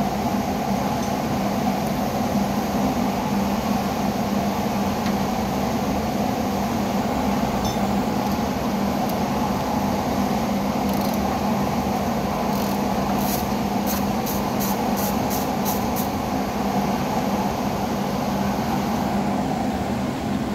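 Steady mechanical drone of a repair-shop bay, a low hum over an even noise. Faint light clicks of hand tools come about three a second for a few seconds past the middle, as a wrench works in the engine bay.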